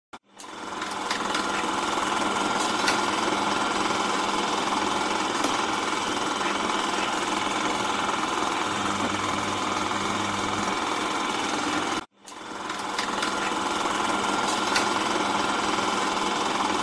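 Film projector running: a steady, rapid mechanical clatter of film being pulled through the gate, with a faint hum under it. It cuts out suddenly about twelve seconds in and starts up again.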